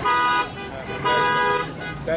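A car horn honking twice, two steady blasts of about half a second each, with voices in the street between them.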